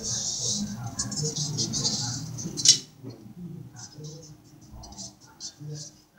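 Brass sieve being handled and turned in the hand, a rustling, rattling handling noise, with one sharp knock a little before halfway, after which the handling noise becomes quieter and intermittent.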